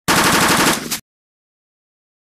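A loud edited sound effect over the intro title: a burst of rapid rattling pulses lasting about a second, starting and cutting off abruptly.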